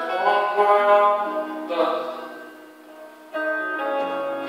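Live music: a man singing with acoustic guitar in long, held phrases. It fades quieter about two and a half seconds in, then comes back in suddenly near the end.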